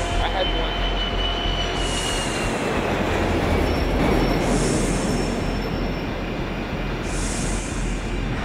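Jet airliner flying very low overhead: a loud, steady roar with a high whine that falls slowly in pitch over the first few seconds, as the plane closes on the north tower of the World Trade Center.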